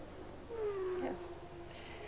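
A man's voice saying a drawn-out "yes", its pitch sliding slowly down over about a second.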